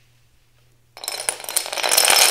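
Dominoes toppling in a chain and a 2D domino pyramid collapsing: a rapid, dense clatter of many small tiles knocking together. It starts about a second in and grows louder.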